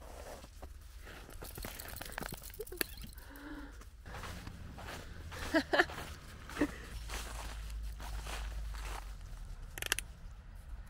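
Footsteps crunching through fresh snow while walking a dog on a leash, over a steady low rumble. A few short vocal sounds come a little past the middle.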